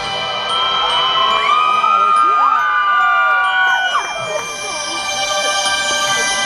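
Concert audience cheering and screaming over a held chord from the live band. The screams are loudest from about one to four seconds in.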